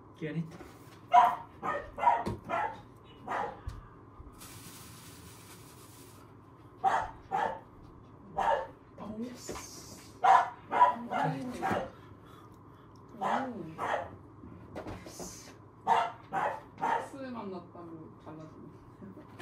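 Small puppy barking in short, high yaps that come in clusters of two to four every few seconds. A brief rustling hiss comes about five seconds in.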